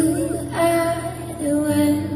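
Live music: a woman singing long held 'ooh' notes that step between a few pitches, over a steady low sustained accompaniment.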